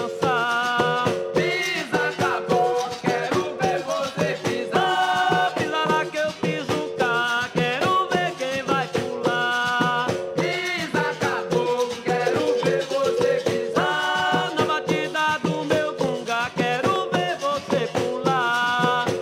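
A traditional capoeira song: voices singing repeated phrases over steady percussion, with a shaken rattle.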